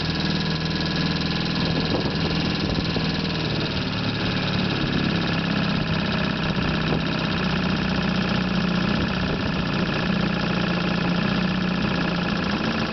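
1961 Johnson JW-17 3 hp two-stroke outboard motor idling steadily, a very nice smooth idle from the freshly tuned motor.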